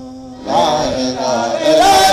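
Men's voices in a group devotional chant: a soft held note at first, then the chant swelling louder with more voices about half a second in, and louder again near the end.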